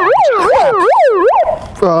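Handheld megaphone's siren wailing quickly up and down, about four sweeps in a second and a half, then cutting off suddenly.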